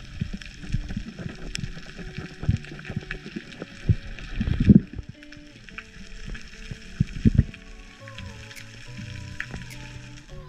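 Soft background music of held, slowly stepping notes over a steady underwater crackle, with a few low thumps, the strongest near the middle.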